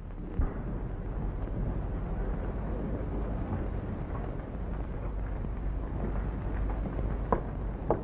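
Steady low rumble and hiss of an old film soundtrack, with a few soft hoofbeats on a dirt street near the end, about half a second apart.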